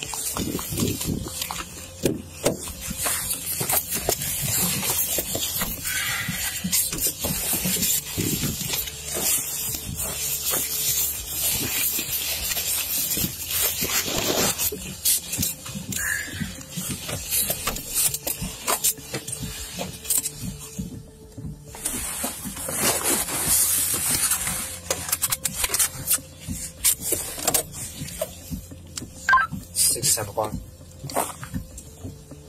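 Rustling and knocking of a body-worn camera on an officer who is moving about and getting into a patrol car, over a low steady hum.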